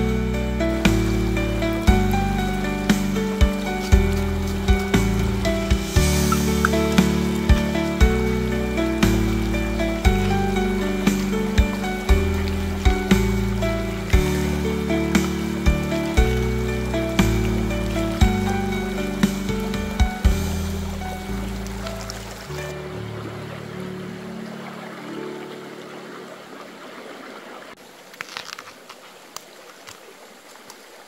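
Background music with a steady beat and a repeating melody, fading out about three-quarters of the way through. As it fades, the steady rush of a shallow stream is left, with a few light knocks near the end.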